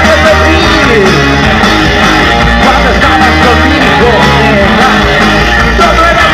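Garage rock band playing live: electric guitars, bass and drums with a lead singer, loud and steady.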